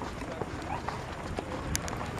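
Outdoor ambience with wind rumbling on the microphone, faint voices in the background, and a couple of sharp clicks near the end.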